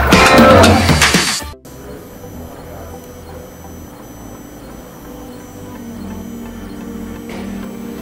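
Plucked-guitar music for about a second and a half, cutting off abruptly. Then a much quieter FDM 3D printer runs as it prints, its stepper motors whining at shifting pitches.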